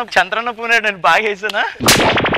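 A man laughing heartily in short repeated bursts. Near the end comes a sudden loud bang with a fast rattle, a gunshot-like sound effect that runs into music.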